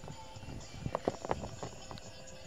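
A quick run of light knocks and taps, about a dozen in under a second starting a little before the middle, from a plastic toy pet figure being handled close to the phone's microphone.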